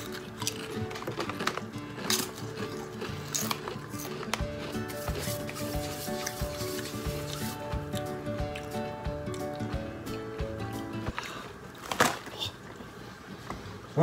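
Background music of held, steady notes that stops about three seconds before the end. Under it come a few sharp crunches of tortilla chips being chewed.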